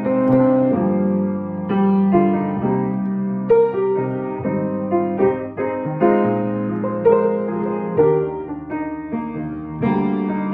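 Solo grand piano playing a ballad-style passage of chords under a melody line, the notes changing about twice a second with a few stronger accented chords.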